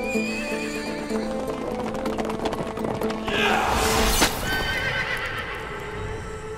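A ridden horse's hoofbeats, with a loud whinny a little past the middle, over background music.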